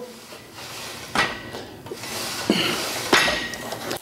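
Plate-loaded low-row pulley on a steel power rack worked through a seated row. The weight carriage, plates and chain give two metallic clanks with a short ring, about a second in and near the end, with a scraping rattle between them.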